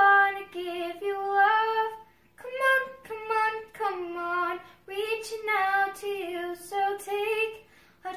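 A ten-year-old girl singing unaccompanied, a pop ballad sung in phrases with sustained, gliding notes and short breath pauses between them.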